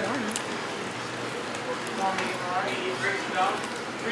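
Indistinct voices talking briefly over the steady background noise of a busy fast-food restaurant dining room.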